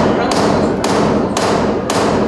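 Hammer blows on the wooden stage set, struck steadily at about two a second, each blow echoing.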